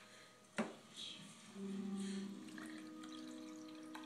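Vinegar poured from a plastic jug into a glass tumbler: a faint steady pour starting about a second and a half in, its tone stepping up in pitch as the glass fills. A light knock comes about half a second in.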